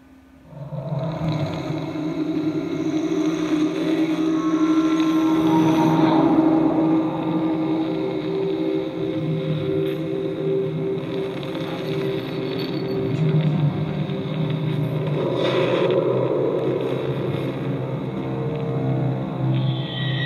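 Steady ambient drone of sustained low tones layered over a soft haze, starting about a second in after near silence.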